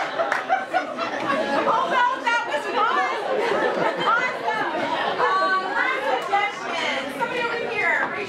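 Many people talking at once: overlapping chatter of several voices, none standing out.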